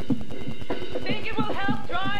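Television commercial soundtrack: background music with a light, rapid tapping rhythm, joined about a second in by a high-pitched voice with rising inflections.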